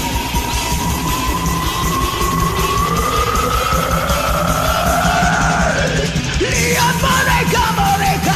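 Heavy metal karaoke backing track with a long held high note that slowly rises in pitch. About two-thirds of the way through, a man's loud, yelled singing comes in over it.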